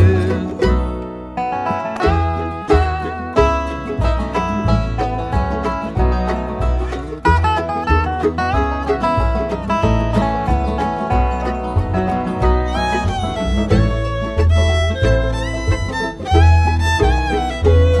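Instrumental break of a bluegrass song: banjo, fiddle and guitar playing quick runs over a steady bass beat, with the fiddle's sliding, held notes more prominent in the second half.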